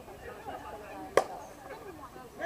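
A slowpitch softball bat striking the ball: a single sharp crack about a second in, over faint voices.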